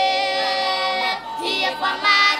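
A group of boys singing a cappella, with several voices together and no instruments. They hold one long note for about a second, then move on to a new phrase.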